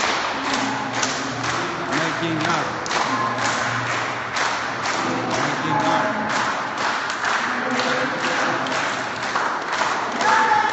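An audience beating out a steady rhythm, about three thumps a second, while several voices hum and sing held notes.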